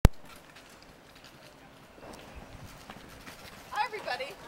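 A sharp click at the very start, then scattered light knocks and footsteps as someone pushes open the heavy door of a red telephone box and steps out onto the pavement. A short voice sounds near the end.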